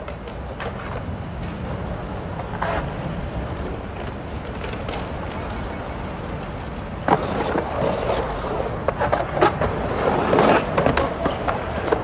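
Skateboard wheels rolling on concrete: a steady low rumble that grows louder and rougher about seven seconds in as the board runs into the bowl, with a few sharp knocks.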